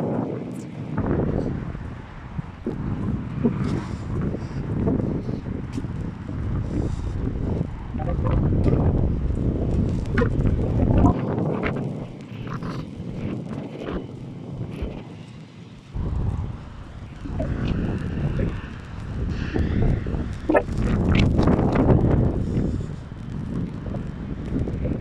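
Wind buffeting a handheld phone's microphone in gusts, a rough rumble that swells and fades, dropping away for a few seconds near the middle.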